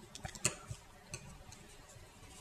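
A few light clicks in the first second or so as a metal loom hook works rubber bands over the clear plastic pegs of a Rainbow Loom.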